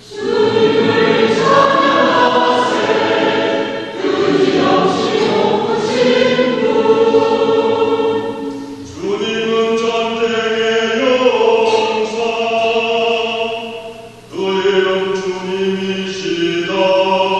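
Mixed church choir singing a gradual, the sung response after a scripture reading. It sings held chords in phrases of a few seconds, with brief breaths before new phrases about 4, 9 and 14 seconds in.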